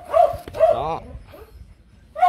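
A dog whining: two short rising-and-falling whines close together in the first second, then a softer trailing sound.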